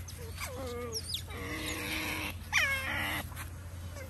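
Otters' begging calls: several short, high chirps that fall in pitch, then a louder falling squeal about two and a half seconds in.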